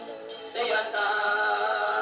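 Music: a sustained, wavering voice-like melody holding long notes, with a louder new note entering about half a second in.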